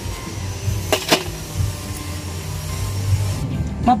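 Background music with a steady low bass line, and two quick sharp clicks about a second in.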